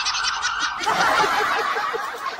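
A rapid, fluttering gobble-like warble of short repeated pulses. About a second in, a quick run of lower pulses joins it.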